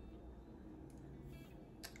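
Near silence: low room hum with a couple of faint, brief rustles of a tail comb parting hair.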